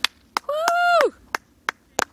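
Hands clapping close by, about three claps a second, with a high-pitched cheer that rises, holds and falls away in the middle.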